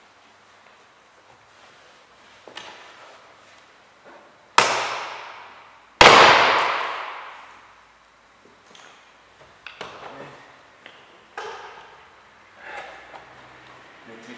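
Plastic door-panel retaining clips popping out of a 2017 Opel Astra K rear door as the panel is pulled off. There are two loud sharp cracks about a second and a half apart, each ringing on for a second or more, then a few smaller snaps. The clips are very strong.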